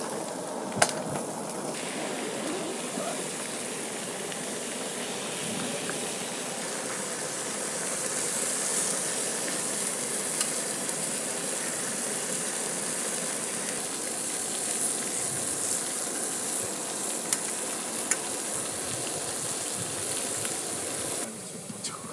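Food sizzling as it fries in a pan, a steady hiss, with a few sharp clicks. The sizzling drops away about a second before the end.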